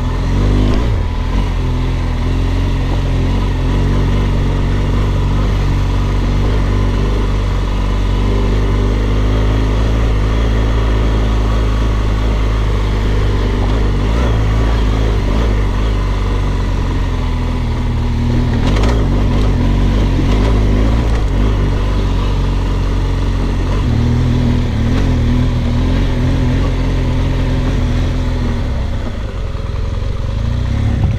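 BMW GS adventure motorcycle's engine running at a steady road pace, with wind and tire noise over a bike-mounted camera. A short clatter comes about nineteen seconds in, and the engine note shifts about two-thirds of the way through.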